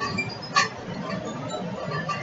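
A single sharp click about half a second in, over low background noise.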